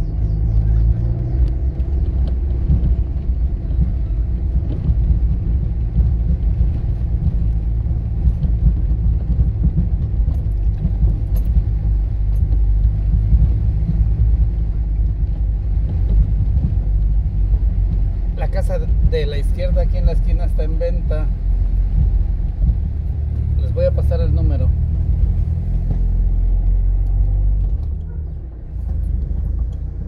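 Car driving along cobblestone streets: a steady low rumble of engine and tyres on the stones, which drops near the end.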